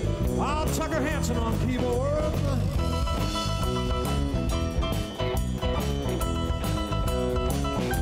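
Live band playing a country-rock instrumental break: an electric guitar lead with bent, wavering notes over drum kit and bass, with no singing.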